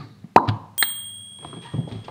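A short plop about a third of a second in, then a click that sets off a thin, steady high tone held for about a second before it stops.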